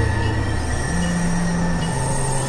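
Experimental electronic synthesizer drone: a sustained low hum with several thin, steady high tones over a bed of noise. A slightly higher low note comes in about a second in and drops out just before the end.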